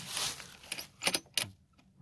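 A few light metallic clicks and a short jingle about a second in, from fingers handling the brass bullet-shaped valve stem caps on a dirt bike's front fork tops.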